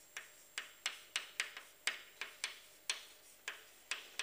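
Chalk tapping on a blackboard while writing, a dozen or so sharp, irregular clicks.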